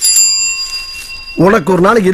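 A small metal bell struck once, with a clear ringing that fades over about a second and a half.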